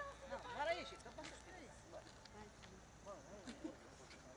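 Faint, indistinct voices of people talking in the background, with no clear words.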